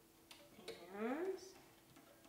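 A few faint clicks and taps from hands working the gut string and wooden tuning pegs on the lyre's crossbar, with one short spoken word about a second in.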